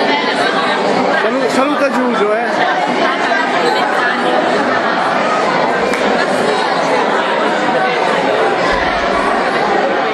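Crowd chatter in a large hall: many voices talking over one another in a steady, continuous babble.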